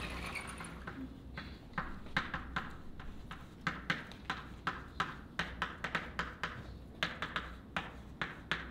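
Chalk writing on a blackboard: a quick, irregular series of sharp taps and short scrapes as the letters are formed. A brief noisy hiss fades out in the first second.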